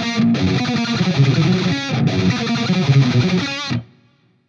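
Distorted Jackson electric guitar playing tremolo-picked chords that move from a G major down to a C9 shape, with two brief breaks between them. It stops abruptly just before the end.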